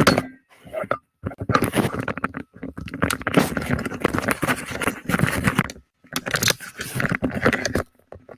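Headset microphone being handled: hands rubbing and adjusting the headset right at the mic make a loud, dense run of clicks and scrapes in several bursts, with short breaks about one, two and a half and six seconds in.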